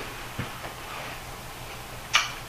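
Quiet room tone: a steady faint hiss, with one soft click a little under half a second in.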